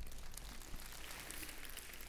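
Faint applause from a church congregation: an even patter of many hands clapping.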